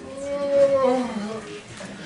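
A man's voice making one long wordless call into a microphone, held on one pitch and then falling near its end, as applause dies away.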